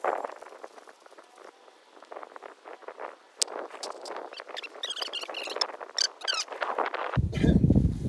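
Hammock and metal hammock stand being handled as the hammock end is hooked on: soft rustles and small clicks, with a run of short high squeaks in the second half. Wind buffets the microphone near the end.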